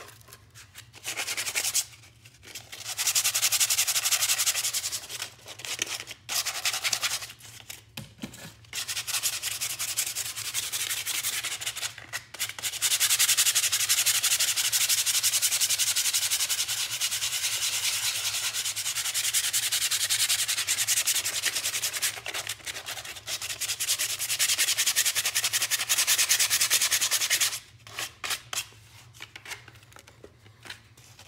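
Sandpaper rubbed by hand along the edges of pine boards to smooth them: scratchy back-and-forth strokes. It comes in short runs with brief pauses in the first half, then one long steady stretch of sanding that stops near the end.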